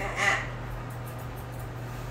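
A doodle dog gives one short whine, under half a second, just after the start, over a steady low electrical hum.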